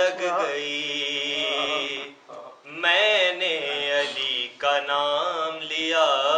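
A man's solo voice reciting a devotional Urdu salam in a melodic chant. He holds a long, slightly wavering note for about two seconds, pauses briefly for breath, then sings two more phrases.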